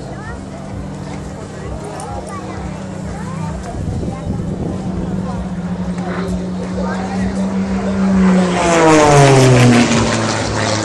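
Propeller engine of an aerobatic plane droning with a steady note that grows louder as it approaches. It passes close about nine seconds in, the loudest point, and its pitch drops steeply as it goes by. Crowd voices can be heard faintly underneath.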